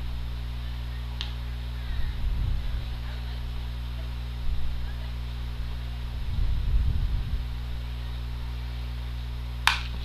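Softball bat striking a pitched ball with a single sharp crack near the end, over a steady low hum and faint low rumbles, with a faint click about a second in.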